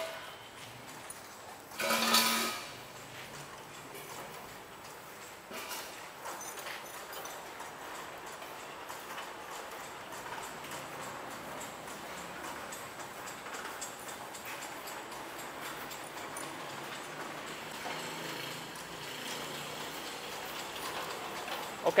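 Cashew cutting machine, driven by a 1 HP electric motor, running on a test after a knife change, with a steady, rapid rhythmic clatter from its chain-driven cutter assemblies. A short louder burst comes about two seconds in.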